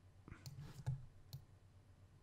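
Computer mouse clicking faintly a few times in the first second and a half, the last click the sharpest.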